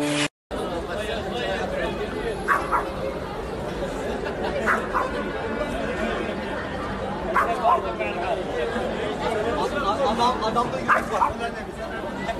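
A dog barking a few times, short single barks several seconds apart, over a steady murmur of people chattering.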